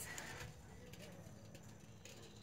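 Quiet outdoor background with a faint rustle of elderberry leaves being handled near the start.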